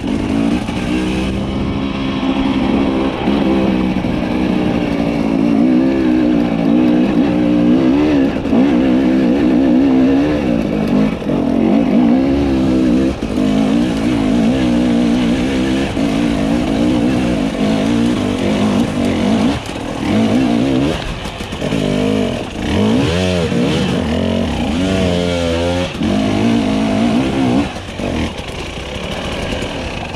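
Husqvarna TE300i two-stroke dirt bike engine running under load on a rocky climb, its revs rising and falling with the throttle. From about twenty seconds in there is a run of quick rev swings, and it settles lower near the end.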